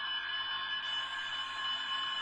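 A steady, unbroken buzzer-like tone made of several fixed pitches, over a faint even background hiss.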